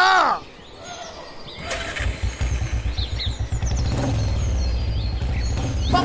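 A small step-through motorcycle engine comes in about two seconds in and runs steadily with a low, even drone, growing a little louder, while birds chirp over it.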